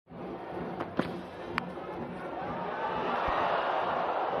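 A sharp knock of a cricket bat edging the ball about a second in, with a lighter click just after, over stadium crowd noise that swells as the ball runs away past the wicket-keeper.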